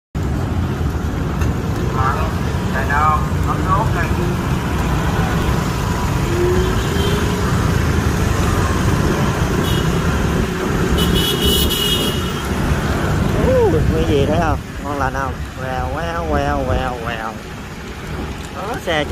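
Steady low wind noise on the microphone and road traffic noise while riding an electric scooter through city streets. A brief high horn beep sounds about eleven seconds in, and a voice talks near the end.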